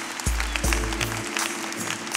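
Background music: two deep bass notes early on over a steady held chord, with sharp percussive ticks.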